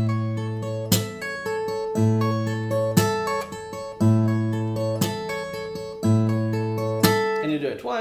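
Takamine steel-string acoustic guitar fingerpicked: a lick on the high E string, pulled off from the 12th to the 9th fret, then the 10th and 9th frets on the B string over an open A bass, repeated with a fresh bass note about once a second.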